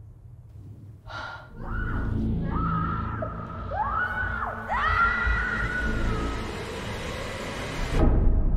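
Screaming: a series of high cries that rise and fall, starting about a second in, over a low rumble.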